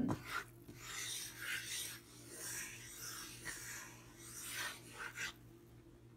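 Wooden spoon scraping across the bottom of a nonstick frying pan while stirring a butter-and-flour roux: a run of rasping strokes, roughly one or two a second, that stop about five seconds in.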